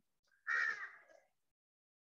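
A single short, harsh call, faint and lasting under a second, with silence around it.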